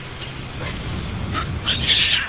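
Roller coaster train running along its steel track: a steady rumble with a high hiss. Near the end, baboons start calling.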